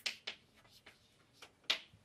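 Chalk on a blackboard: a few short, sharp taps and scratches as words are written, two close together at the start, fainter ones in the middle and a clearer one near the end.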